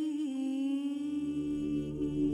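A woman's voice holding one long note, which steps down slightly in pitch just after it starts. About a second in, a low sustained accompaniment note comes in beneath it.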